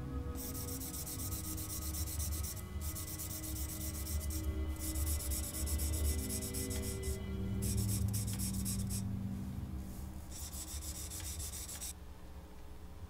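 Pencil scribbling hard back and forth on paper: rapid scratching strokes in five long runs with short pauses between, over low, sustained music.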